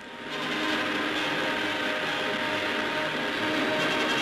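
Steady mechanical roar, like aircraft engines running, fading in over the first half second and then holding even.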